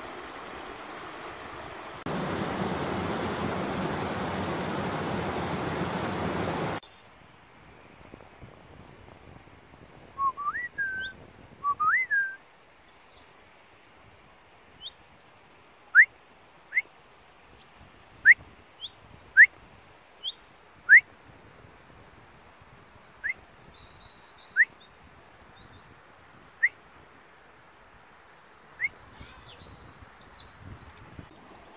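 Rushing stream water for the first seven seconds, louder after about two seconds and cutting off suddenly. Then a small songbird calls with short, sharply rising notes: a couple of longer ones at first, then single notes every second or two.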